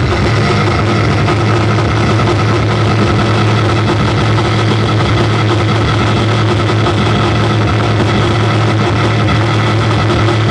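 Live electronic noise music: a loud, dense wall of distorted noise over a steady low drone, with a few held tones above it, unchanging throughout.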